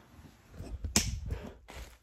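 Low rumbling handling noise on the microphone, with a single sharp click about a second in.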